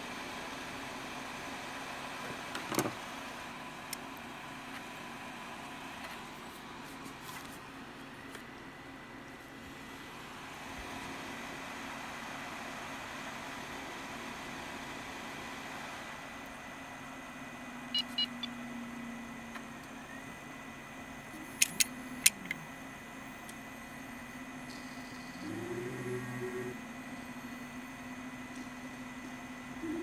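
Spindle motor of an opened Seagate Cheetah 15K.7 hard drive running at speed: a faint steady hum with a thin high whine over it, broken by a few sharp clicks about 18 and 22 seconds in. The owner takes the sound for a failed spindle bearing that is off-centre and out of balance.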